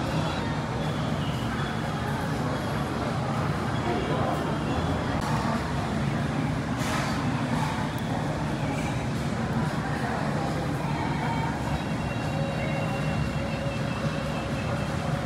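Steady background ambience of a busy hawker centre: a continuous low rumble with faint voices in the background.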